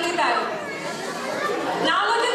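People talking over one another, a murmur of voices in a large hall.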